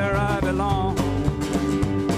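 Live band playing a guitar-led rock song: strummed acoustic guitar over electric guitar, bass and drums, with a melody that bends in pitch in the first second.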